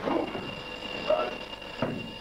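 Boxers' shoes squeaking in short chirps on the ring canvas during sparring, with a sharp knock of a gloved punch landing near the end. A thin steady high whine runs underneath.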